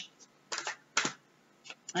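Oracle cards being handled and shuffled by hand: about three brief soft clicks and rustles, the one about a second in the loudest.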